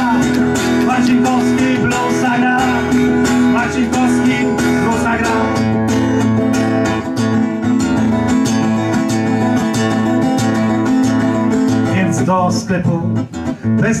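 Acoustic guitar strummed steadily in an instrumental passage of a song, thinning out briefly near the end as the singing voice comes back in.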